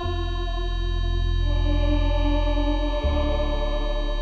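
Background music in a gap between vocals: sustained keyboard chords over a low bass note, the chord changing about a second and a half in and the bass shifting near the end.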